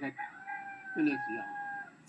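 A rooster crowing in the background: one long call of about a second and a half, held nearly level in pitch with a slight step up midway.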